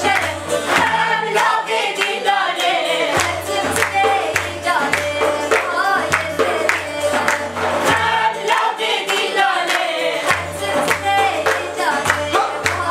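A group of women singing a song together in unison, with steady hand-clapping keeping the beat.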